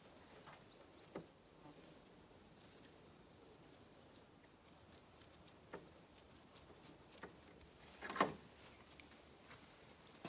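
Faint rustles and soft clicks of blue plastic rope being twisted and handled, spaced apart over a quiet background, the loudest a short rustle about eight seconds in.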